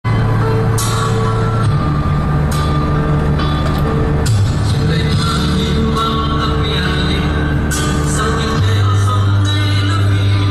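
Music with held bass notes that shift every few seconds and occasional sharp, fading crash-like hits.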